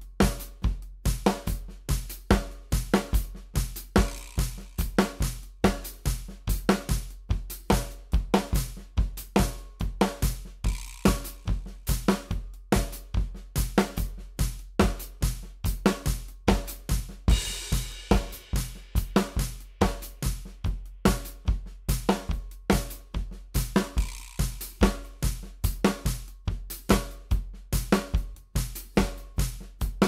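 Drum kit played continuously at 144 bpm: an improvised groove of paradiddle permutations with the two single notes accented, spread over snare, bass drum, hi-hat and cymbals in an even stream of strokes. A brighter cymbal crash rings out a little past halfway.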